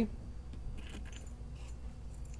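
Keys being handled with the brass mortise cylinder, giving a few faint metallic clinks and jingles about half a second to a second in and again briefly near the end.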